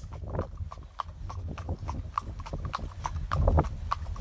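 Horses' hooves clip-clopping on an asphalt road, about four hoofbeats a second, over a steady low rumble of wind on the microphone.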